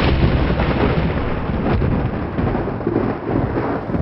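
Thunder rumbling steadily under a noisy, rain-like hiss.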